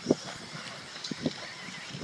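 Electric 1/10-scale RC buggies running on a dirt track: a faint, steady high motor whine, with a few short knocks, one right at the start and two close together about a second in.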